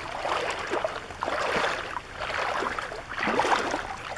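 Feet wading through shallow river water, the water sloshing and swishing in uneven surges with each step.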